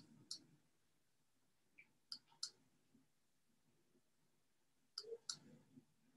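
Near silence with a few faint, sharp clicks scattered through it: one just after the start, two a little after two seconds, and a close pair near the end.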